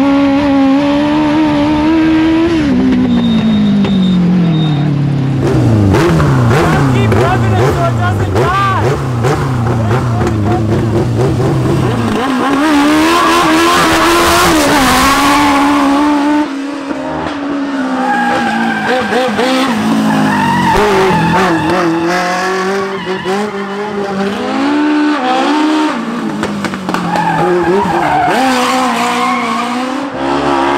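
Legend race car's motorcycle engine revving hard and dropping back again and again through gear changes and corners on a timed lap, with tyres squealing as it slides. It is heard first from inside the car, then from beside the track as the car drives past.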